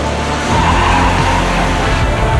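A car skidding, heard as a swell of tyre noise from about half a second in that eases near the end, over a continuing hip-hop beat.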